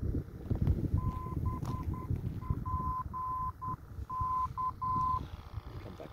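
Brookmans Park VOR navigation beacon's Morse identifier heard through a Malachite SDR receiver's speaker: a tone of about 1 kHz keyed out dash-dot-dot-dot, dot-dash-dash-dot, dash-dot-dash, spelling BPK, once, over low background noise.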